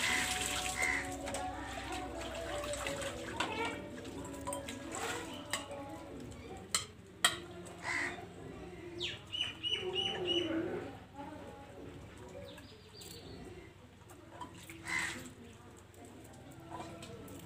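Hand-washing of steel dishes: water poured from a mug splashes onto a steel plate, then a few sharp clinks of steel plates being scrubbed and handled. Birds chirp in the background, with a quick run of short chirps about halfway through.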